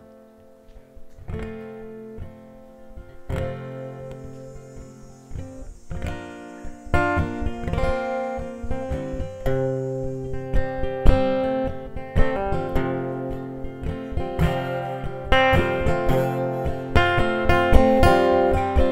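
Solo acoustic guitar playing a song's introduction. It starts with sparse picked notes and builds into fuller strumming, growing louder about seven seconds in and again near the end.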